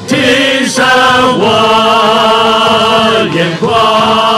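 A church worship team sings a praise song with band accompaniment. The voices hold long notes, with short breaks between phrases about a second in and again past three seconds.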